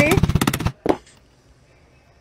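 Hammer rapidly striking a metal button-setting pusher on a brass cover-button mould, pressing the back piece onto a fabric-covered button. A fast run of sharp taps in the first half-second or so, with one last tap just under a second in.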